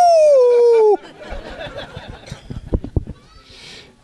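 A man's drawn-out "Woo!" yell through a microphone, about a second long and falling in pitch, followed by quieter audience laughter and murmur.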